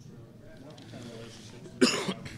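A man clears his throat with one short, sharp cough into his fist near the end.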